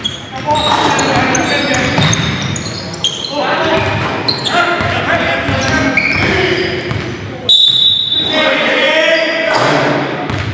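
Basketball game sound in a large gym: a ball being dribbled on the hardwood floor, with players' voices ringing in the hall. A short high-pitched tone sounds about three quarters of the way in.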